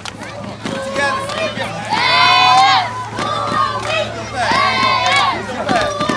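A group of children shouting a cheer in unison, each long call about two and a half seconds apart, over crowd noise and a steady low hum.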